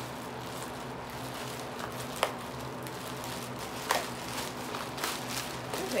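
Clear plastic shipping bag crinkling and rustling as hands pull and stretch it to get it open, with a sharp crackle about two seconds in and another near four seconds. A steady low hum runs underneath.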